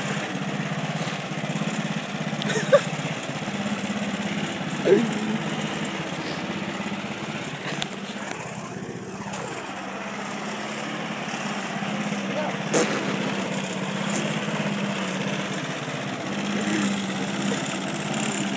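Craftsman walk-behind gasoline lawn mower engine running steadily as it is pushed across grass.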